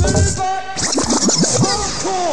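A DJ scratching a vinyl record over an old-skool rave track. Drum hits give way about halfway through to a quick run of back-and-forth pitch sweeps.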